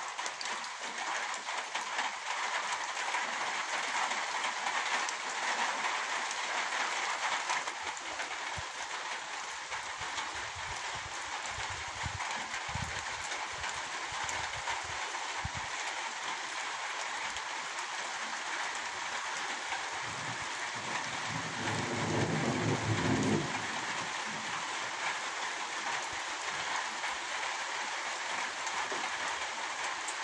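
Steady downpour of rain on garden plants and into a water-filled rain barrel, with a low rumble of distant thunder about twenty seconds in.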